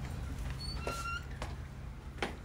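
A brief high squeak, rising slightly, about a second in, with a couple of soft knocks around it over a low steady hum.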